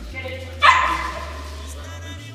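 A dog gives one short, sharp bark about half a second in.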